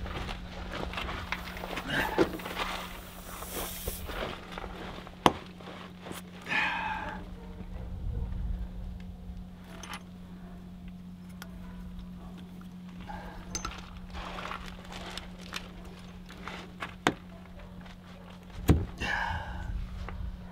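Tire plug being pushed into a punctured all-terrain tire with a T-handle insertion tool: small scrapes and clicks of the tool working in the rubber, with a sharp knock near the end, over a steady low hum.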